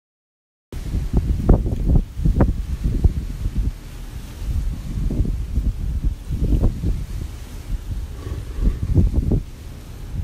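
Wind buffeting a phone's microphone: a loud, gusty low rumble that rises and falls unevenly, starting about a second in.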